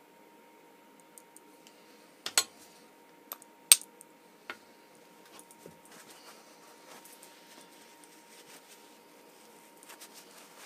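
A handful of sharp metal clicks and clacks from steel slip-joint pliers pressing a small pivot pin into a steel tool body and then being set down on the bench. The two loudest come about two and a half and nearly four seconds in, followed by quiet handling rustle.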